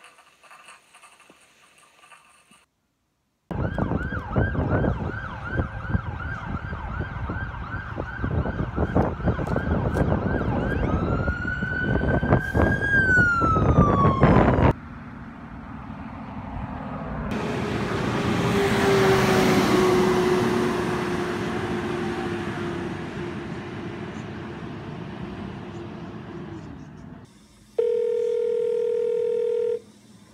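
A siren-like wail that rises and falls in pitch, cut off suddenly about fifteen seconds in. It is followed by a long swelling whoosh of noise over a low held tone. Near the end, a steady two-second telephone tone sounds.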